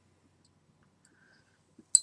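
Near silence: quiet room tone, broken by one short, sharp click near the end.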